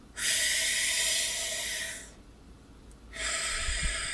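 A woman's long, audible breaths as she demonstrates diaphragm breathing for horn playing: one long breath, a pause of about a second, then a second breath blown out through pursed lips.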